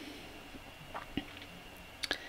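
Faint room tone with a couple of small, short clicks about a second in.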